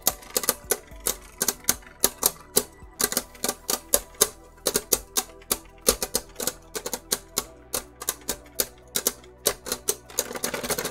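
Two Beyblade Burst spinning tops clashing again and again in a plastic stadium: a fast, irregular run of sharp clicks, several a second.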